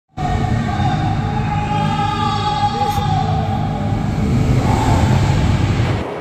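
Steel roller coaster train running on its track overhead: a steady, loud low rumble with a held whining tone above it.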